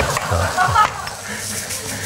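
Fine wire-mesh sieve being shaken and tapped as crushed hard-candy dust is sifted through it onto baking paper, giving a soft, steady rustling hiss.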